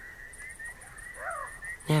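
Night-time nature background: a rapid, regular high chirping of small creatures, with one short rising-and-falling call a little over a second in.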